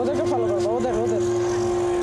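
A person's voice during the first second, over a steady, even hum that holds one pitch.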